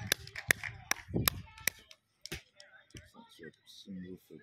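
One person clapping close by, about four or five sharp claps a second for the first couple of seconds, then a last clap, in applause for a good shot.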